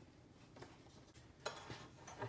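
Near silence with a few faint clicks and knocks, a pair of them about a second and a half in, from tools being handled on the board; the circular saw is not yet running.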